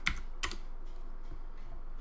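Computer keyboard keystrokes: two sharp key clicks near the start, a faint one later, over low background hiss.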